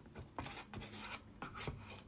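A metal fork scraping the inside of a nearly empty ice cream tub, in about five short scrapes, scooping up the last of the ice cream.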